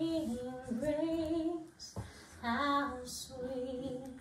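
A woman singing a hymn solo in long held notes, with a brief pause about halfway through.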